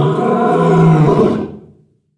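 A loud, pitched roar lasting about a second and a half, then fading out.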